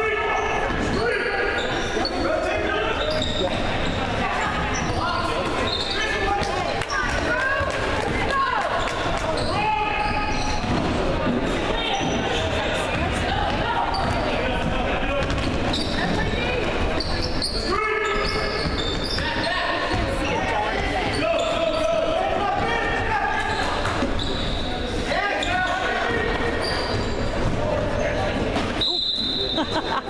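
Basketball game in an echoing gym: a ball dribbled on the hardwood floor, sneakers squeaking and spectators chattering and calling out throughout. A referee's whistle sounds once near the end.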